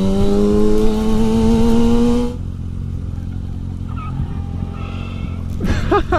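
Kawasaki Ninja sport bike's engine pulling under throttle, its pitch rising slowly. About two seconds in the sound cuts off suddenly to a lower, steady engine note.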